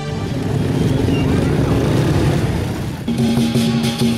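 Street noise with motorcycle engines running in a crowd, then about three seconds in lion dance music starts: repeated cymbal clashes over a steady held tone.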